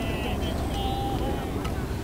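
Wind buffeting the microphone with a steady low rumble, under distant high-pitched voices of softball players calling out on the field.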